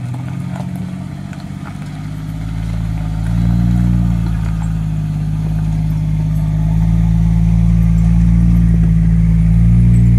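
Four-wheel-drive vehicles driving slowly past on a rough dirt track, engines running at low revs with a steady low drone. The drone grows louder from about two seconds in and is loudest near the end as the second vehicle draws close.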